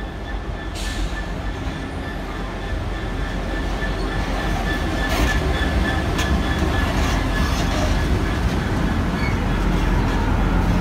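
Class 66 diesel locomotive, its EMD two-stroke V12 engine running, approaching and passing slowly at the head of a Sandite railhead-treatment train, growing louder as it nears. A few sharp clicks from the wheels sound around the middle.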